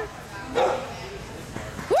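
A dog barking and yipping as it runs the last jumps of an agility course, under a person shouting "harder" and laughing, with a loud rising "woo" of a cheer starting near the end.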